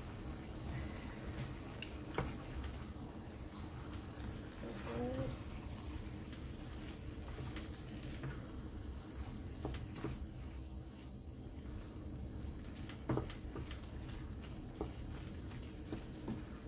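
Ground beef cooking in its juices in a stainless steel skillet, with a faint steady sizzle. A wooden spoon stirs it, giving a few scattered scrapes and taps against the pan.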